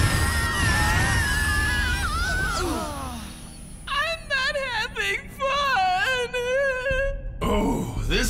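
A short music cue ending in falling notes, then a boy's exaggerated cartoon crying: a wavering wail broken into sobbing bursts.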